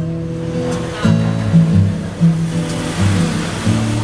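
Steel-string acoustic guitar played solo, a run of plucked chords and bass notes that change every half second to a second.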